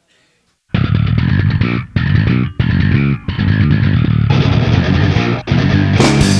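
A live instrumental heavy metal band (bass guitar, electric guitar, drums and keyboards) comes in together after a brief silence, under a second in. It plays a fast riff broken by several short, sudden stops, with cymbals growing brighter in the second half.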